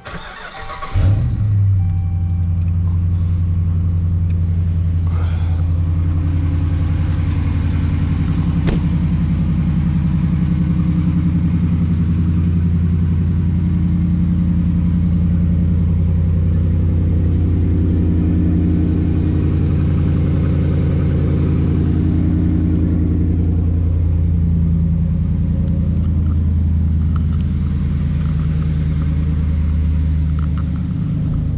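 Ram pickup truck's engine cranking briefly and catching about a second in, flaring up and then settling into a steady idle.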